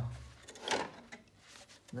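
Wooden case of a Wharfedale Linton amplifier being slid and lifted off its metal chassis: one short wooden scrape less than a second in, then faint rubbing.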